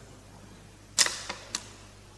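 Three sharp percussive clicks in an instrumental theater score. The first, about a second in, is the loudest and rings briefly; two quieter ones follow within about half a second, over a faint background.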